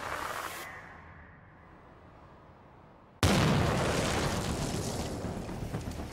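A low rumble fades almost to silence, then a sudden explosion hits about three seconds in, with a deep boom whose noise dies away slowly.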